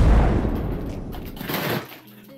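Logo-intro sound effect: a deep boom with a rumbling tail that fades away, and a smaller hit about one and a half seconds in.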